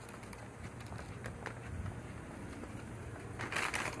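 Low, steady outdoor background noise, then a brief crinkle of a paper takeout bag being set down on a concrete driveway near the end.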